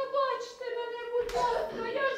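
A high-pitched voice calling out in long, drawn-out, wavering sounds, with one short noisy clap or knock about a second and a half in.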